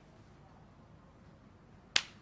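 Faint background hush, then one sharp, very brief click right at the end.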